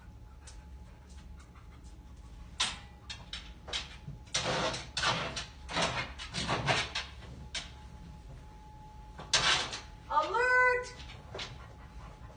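Dog sniffing in quick bursts while searching for a scent hide, with scattered light clicks. Near the end comes one short vocal sound that rises in pitch.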